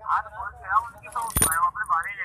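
A man talking, with one sharp click or knock a little under a second and a half in.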